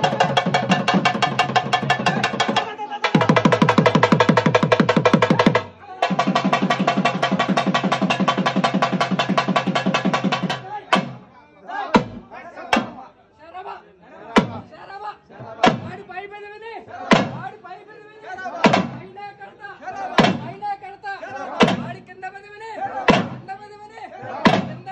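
Double-headed barrel drums played in a fast, continuous roll, with two short breaks, that stops about eleven seconds in. After that come single drum beats about once a second, with voices in between.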